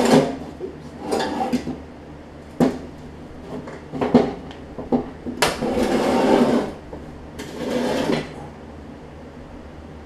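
A 40-inch Murray mower deck being shifted and fitted back under a riding mower: a series of metal clanks and scrapes with a few sharp knocks, and two longer scrapes about five and a half and seven and a half seconds in.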